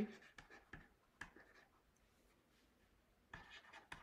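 Faint taps and short scrapes of a stylus writing on a tablet screen, pausing for about two seconds in the middle before the strokes resume.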